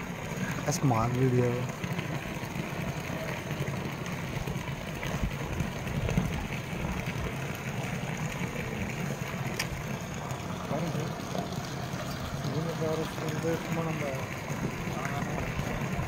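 Water running from a PVC pipe outlet and splashing into a concrete reservoir as it fills, a steady rushing over a low hum. Faint voices come and go in the background.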